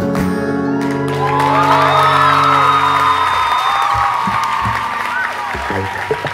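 Final chord of a steel-string acoustic guitar ringing out and fading about three seconds in, as an audience breaks into applause and cheering with whoops from about a second in, loudest around two to three seconds.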